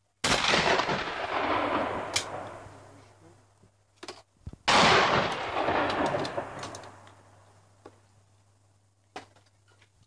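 Two shotgun shots at clay targets, about four and a half seconds apart, each followed by a long echo that dies away over about three seconds.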